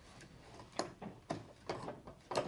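Four small, sharp wooden clicks and knocks as the little door of an old wooden comb box is worked loose from its groove to take it out.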